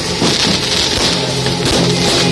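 Loud rock music with guitar and drums.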